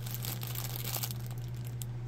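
Clear plastic bag around a packaged doll crinkling as it is turned and handled, a run of small irregular crackles.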